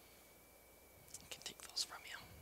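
Whispered speech, a few breathy hushed words in the second half, over a faint steady high-pitched tone.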